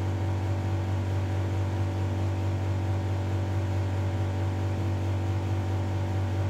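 A steady electrical hum from a running appliance motor: an even low drone with several fainter steady tones above it, unchanging throughout.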